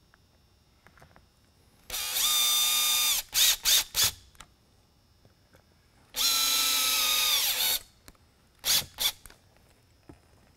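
Cordless drill/driver driving two small screws into a lighthead housing: two runs of motor whine of about a second and a half each, the pitch sagging as each screw seats, each followed by a few short trigger blips.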